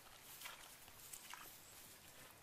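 Faint swishes and small splashes of feet moving through shallow water and wet grass, a few short ones about half a second and a second in, over near-quiet outdoor background.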